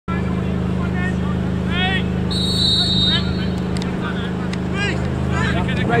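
A referee's whistle blown once for about a second to start play, over a loud, steady, low motor drone that cuts off abruptly at the end, with a few short shouts from players.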